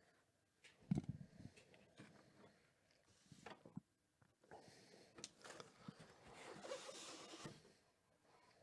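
Quiet handling of a cardboard box on a mat: a low knock about a second in, scattered small taps and clicks, then a longer rustle of cardboard and packaging near the end.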